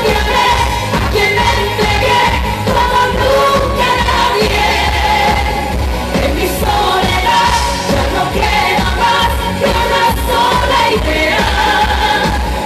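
A pop song performed live, with a female lead vocal over a steady beat.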